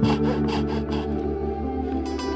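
Fine-toothed hand saw cutting cottonwood bark in quick, even strokes, about four a second, stopping about a second in. Plucked-string background music plays throughout.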